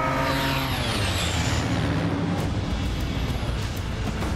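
Film sound effects: a small plane's engine passing with a whoosh that falls in pitch over the first couple of seconds. Underneath is a constant deep rumble of destruction.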